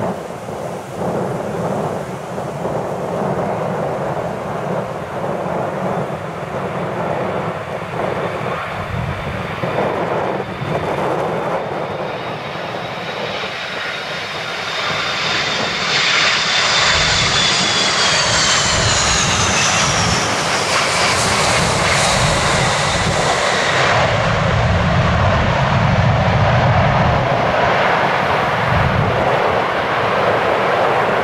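McDonnell Douglas MD-80-series jetliner landing, with gusty wind on the microphone. The engine whine grows louder and slides down in pitch as the jet passes close by about halfway through. A deeper engine rumble follows as it rolls out on the runway.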